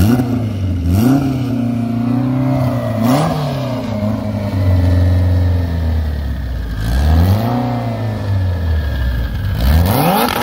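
Toyota Celica ST185 AWD drag car's engine running at a low, uneven idle and blipped up and down several times while the car creeps into the staging beams, with a sharp rise in revs near the end.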